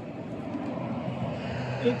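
A steady engine drone that grows slightly louder, from a passing motor vehicle or aircraft.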